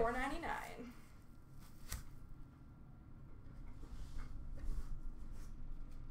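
A voice trails off in the first second, then faint handling of a wooden collector box and its contents: one sharp knock about two seconds in, followed by light taps and rustles.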